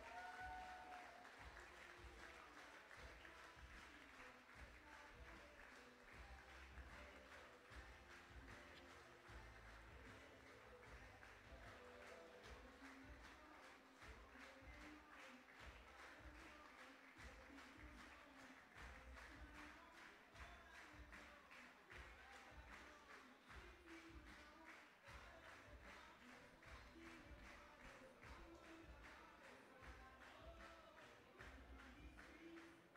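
Faint audience applause, sustained throughout, over quiet background music.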